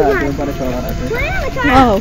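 People's voices talking without clear words, including a high voice that rises and falls in pitch in the second half.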